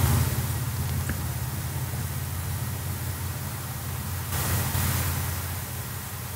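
Steady low hum under an even hiss of background noise, with no speech; the hiss swells briefly about four and a half seconds in.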